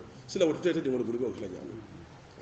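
A man's preaching voice holds one drawn-out word with a sliding pitch, then pauses.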